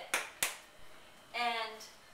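Two sharp clicks about a third of a second apart, from the plastic flip-top cap of a small bottle being snapped shut, followed by a brief vocal sound.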